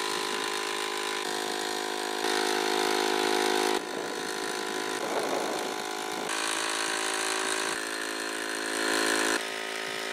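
Air compressor running steadily, blowing air into a large inflatable pool float, its motor hum overlaid with a hiss of air. The pitch and loudness shift abruptly several times.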